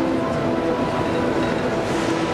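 Film soundtrack: a steady, dense rumble under several sustained notes of the score, with no dialogue.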